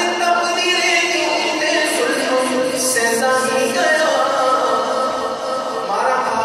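A man singing a naat, an Urdu devotional praise poem, into a microphone and amplified over a PA system, his voice holding long, ornamented notes.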